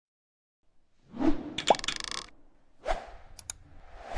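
Animation sound effects: starting about a second in, a swelling whoosh with a short pitched plop in it, then a second, shorter whoosh and two faint ticks.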